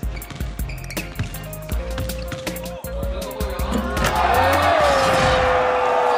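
Basketball dribbled on a hardwood court over a pounding music track, then a crowd bursting into cheers and shouts about four seconds in as a basket ties the game.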